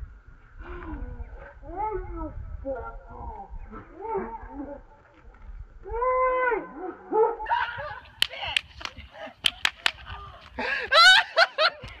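Excited shrieks, squeals and laughter from people playing hot potato with a water balloon, with a long held squeal about halfway through and a loud burst near the end. A quick series of sharp clicks comes a little past the middle.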